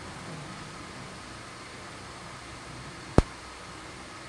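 Steady, even hiss of room noise in a large hall during silence, with one sharp click about three seconds in.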